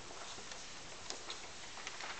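Sheet music being handled at a grand piano: a few faint, short paper clicks and rustles over a steady hiss.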